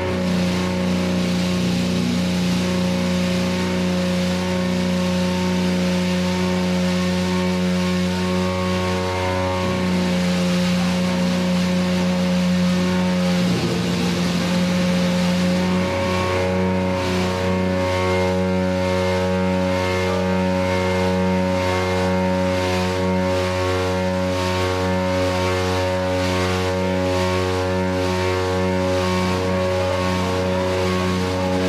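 A live electric bass and drum kit playing loud, with the bass holding a heavy, distorted drone over cymbals and drums. The bass note shifts about halfway through, and the drumming turns into a steady beat from then on.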